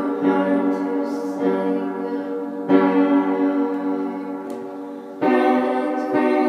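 Upright piano played in an improvised piece: sustained chords struck one after another, each ringing on and fading. A loud new chord comes about three seconds in and another about five seconds in.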